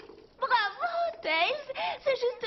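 A high-pitched cartoon character's voice making short wordless vocal sounds, four quick syllables with a bending pitch, starting about half a second in.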